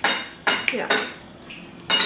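Metal or ceramic kitchenware clinking: about four sharp strikes, each ringing briefly at the same pitch, with two close together about half a second in and the last near the end.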